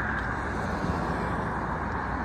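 Steady road traffic noise: an even rumble of passing cars with no single event standing out.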